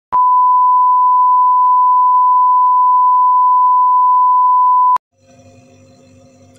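Television test-card tone: one steady, pure, high beep lasting about five seconds that cuts off suddenly, followed by faint background noise.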